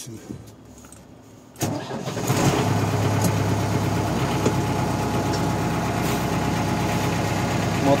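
MTZ-82.1 Belarus tractor's four-cylinder diesel, already slightly warm, started on the key: a short crank about a second and a half in, catching almost at once and settling into a steady idle.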